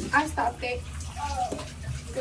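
A young woman's voice making short wordless vocal sounds, close to the microphone in a small, echoey bathroom, over a steady low hum and hiss.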